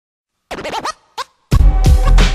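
Turntable scratching on a hip-hop track: after half a second of silence come a few quick back-and-forth record scratches, then a lone short one. A hip-hop beat with deep bass and drum hits kicks in about a second and a half in.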